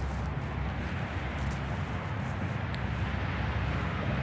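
Steady outdoor background noise, mostly a low rumble, with a faint click about two-thirds of the way through.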